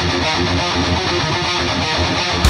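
Heavy metal electric guitar playing a fast riff in a studio recording, in a passage with no cymbals.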